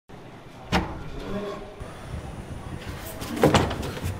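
A wooden door: a sharp click about three-quarters of a second in, then a louder knock and bump around three and a half seconds as the door is opened.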